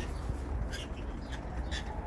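Two short chirps from a pet parrot, about a second apart, over a steady low rumble of wind on the microphone.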